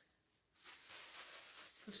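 Faint rustling of a plastic bag being handled, starting about half a second in after a brief hush.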